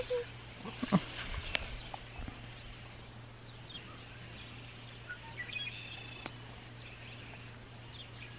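Young kittens mewing faintly a few times, the clearest a short mew about a second in, over quiet background with a low steady hum.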